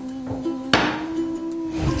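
A single sharp knock about three-quarters of a second in, over background music with held notes.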